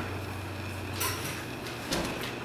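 Classroom room noise: a steady low hum with two short clicks or knocks about a second apart.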